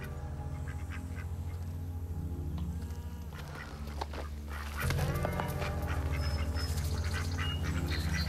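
A low, sustained musical drone that swells about five seconds in, with domestic ducks quacking over it.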